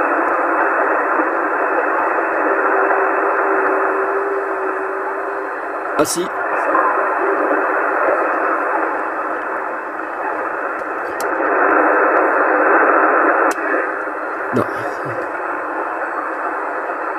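CB transceiver's loudspeaker hissing with static in USB (single sideband) mode on 27.305 MHz, a weak distant station garbled and barely audible under the noise. A faint steady whistle comes in about two to five seconds in, and a few sharp clicks break the hiss.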